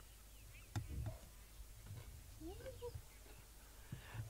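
Quiet outdoor ambience with faint bird calls, a single sharp knock about a second in, and a short, faint rising animal call about two and a half seconds in.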